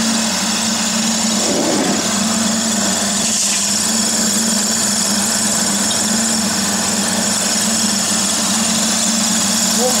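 Floating-fish-feed pellet extruder running steadily under its electric motor: a loud constant hum with a hiss over it as puffed pellets come out of the die.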